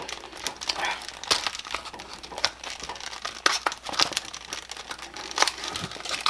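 Irregular scraping, rustling and clicking as a handheld Motorola HT1000 radio is worked loose by hand from its stiff old belt pouch.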